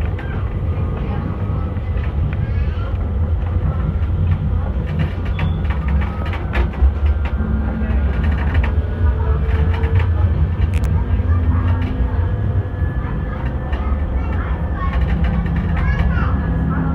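Street tram running, heard from inside the car: a steady low rumble of wheels and motors with occasional clicks and rattles, and passengers' voices faintly in the background.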